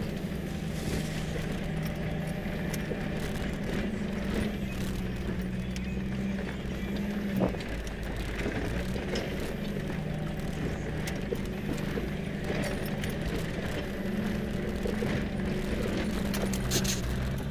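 Cabin noise of a 4x4 driving slowly over a rough dirt fire road: a steady engine drone with loose rattles and knocks as the vehicle bounces over the ruts, and one sharper knock about seven and a half seconds in.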